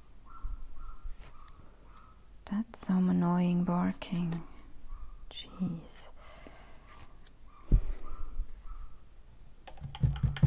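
Paintbrush dabbing and scraping paint onto paper in light taps, with a short voiced hum-like sound lasting about a second near the three-second mark and a dull thump later on.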